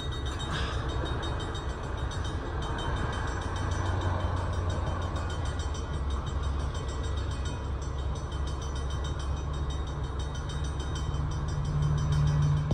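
Vintage electric locomotives (Canadian National box motor 6714, being moved by a museum electric locomotive) rolling slowly along the track: a steady low rumble with a faint higher whine.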